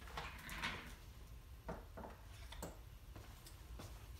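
Quiet room tone with a few faint, short taps in the middle stretch.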